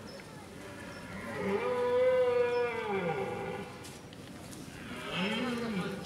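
Red deer calling during the rut: one long, moo-like call that rises and then falls in pitch, from about one to three and a half seconds in, and a shorter call near the end.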